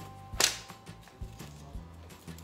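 A single sharp crack about half a second in, over faint background music.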